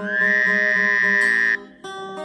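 Acoustic guitar strummed chords under a loud held high sung note that slides up into pitch at its start and cuts off abruptly about one and a half seconds in, after which the guitar carries on alone.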